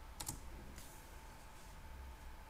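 Two quick, faint computer clicks shortly after the start, as the on-screen newspaper page is turned, then a soft brief rustle, over a faint steady electrical whine.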